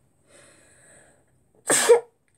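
A girl sneezes once, loudly and abruptly, near the end, after a faint breath drawn in beforehand.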